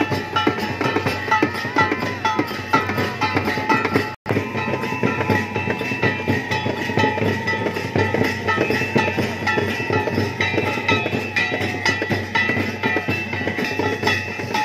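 Devotional kirtan music: drums and small percussion keep a quick, steady rhythm under a melody line. The sound cuts out for an instant about four seconds in, then carries on.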